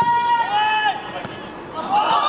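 Men shouting during a football match: two long, drawn-out calls in the first second, then another shout starting near the end.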